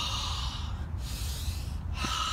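A man taking deep, forceful breaths through the open mouth, two breaths of about a second each, as recovery breaths between yoga exercises, over a steady low rumble.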